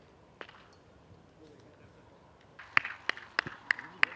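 A football struck once, then about five sharp kicks in quick succession near the end, roughly three a second, as balls are passed in a training drill.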